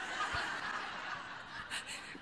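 Audience laughing, dying away over about a second and a half.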